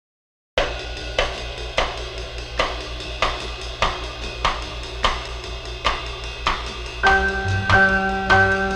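Instrumental intro of a vocal jazz-pop song: after a brief silence, a drum kit plays a steady beat of about three hits every two seconds. About seven seconds in, keyboard chords and bass join with sustained notes.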